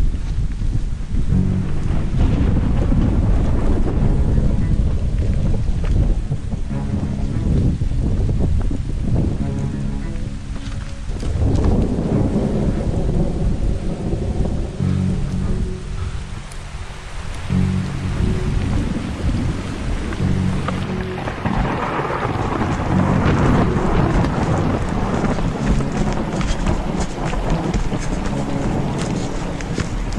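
Rain and weather noise on an action camera's microphone: a loud, steady low rumble with a hiss on top. Background music plays underneath.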